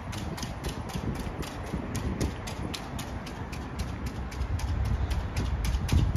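Footsteps on wet tarmac: a quick, regular patter of short clicks, about four or five a second, over a low rumble of handling and air that grows louder near the end.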